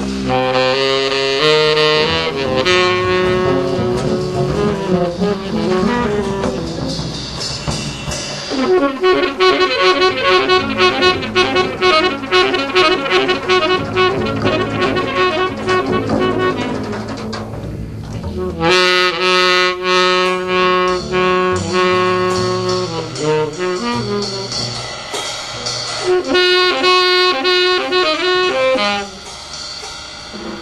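Free-improvised jazz led by a saxophone playing long, fast flurries of notes, with a brief break about eighteen seconds in and a drop in level near the end.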